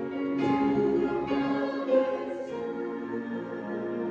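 Small mixed church choir singing together, its phrase tailing off about three seconds in.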